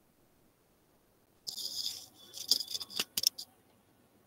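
Brief metallic jingling starting about one and a half seconds in, followed by a handful of sharp clicks, all over within about two seconds.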